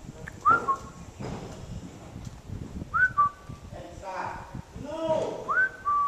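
A short two-note whistle, a quick upward slide followed by a lower held note, repeated three times about two and a half seconds apart.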